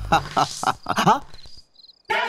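A man chuckles in a few short bursts and says "haan" as the music stops. Then, near the end, crickets chirp faintly in a thin, high, steady trill.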